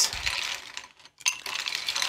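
Ice cubes clinking and rattling as they are scooped from a bowl into a tumbler glass, a cluster of clinks fading within the first second, a short pause, then more clinks.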